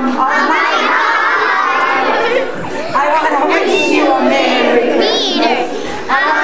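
Many young children's voices at once, chattering and calling out, with a high-pitched child's squeal near the end.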